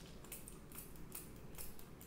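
Small finger-pump spray bottle misting homemade fixative, a water-and-white-glue mix, over a paper drawing. It gives a faint, quick series of short spray hisses, about three or four pumps a second.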